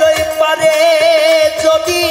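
Male baul singer holding one long note with vibrato over a quick, steady drum beat and folk band accompaniment.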